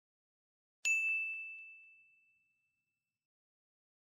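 A single bright bell-like chime struck once, a little under a second in, ringing on one high note and fading away over about two seconds.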